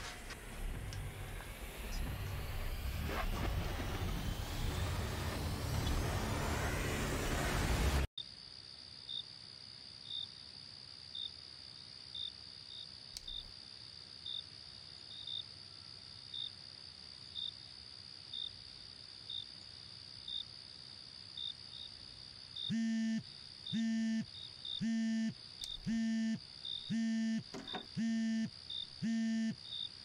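A rushing noise that grows louder for about eight seconds and cuts off abruptly, followed by crickets chirping steadily. About 23 seconds in, a mobile phone starts ringing with a low buzzing tone repeated about once a second.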